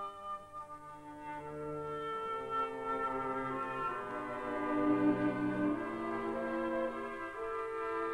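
Background music of long, held notes that move slowly from one pitch to the next.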